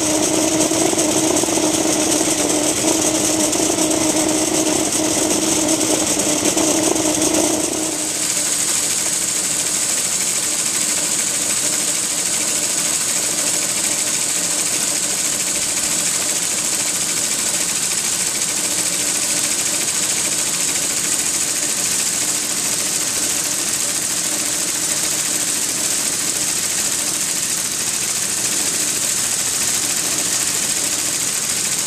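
Gas-fired Accucraft AC-12 Gauge 1 live-steam locomotive under steam and running its valve gear on a test stand: a steady hiss of steam and mechanical running noise. A humming tone sounds with it for about the first eight seconds, then stops, leaving the hiss.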